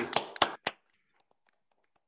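A few quick hand claps close to the microphone in the first moment, then near silence.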